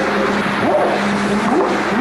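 A few short rising whoops over a loud steady hiss: the whooping noises recorded in the woods, which the recordist could not match to any animal he knew of in Pennsylvania.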